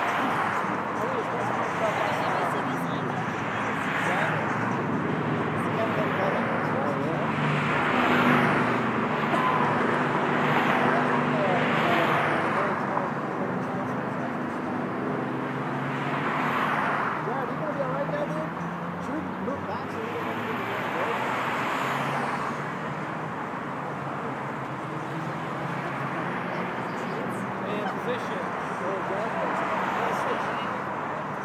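Street traffic: a string of cars passing one after another, each swelling and fading as it goes by, busiest in the first half and thinning out after about two-thirds of the way in. Indistinct voices talk underneath.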